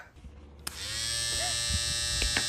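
Electric hair clippers buzzing: switched on with a click about two-thirds of a second in, then running steadily.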